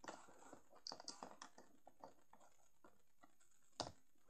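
Faint clicks and taps of a plastic Littlest Pet Shop toy figure and its stand being handled on a tabletop, with one sharper knock near the end.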